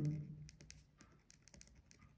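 A pen writing on paper: faint scratches and ticks of short strokes as a word is handwritten.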